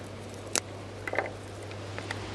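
Chilli peppers being picked off a potted plant by hand: faint snaps of the stems, with one sharp click about half a second in and a few smaller clicks about a second in.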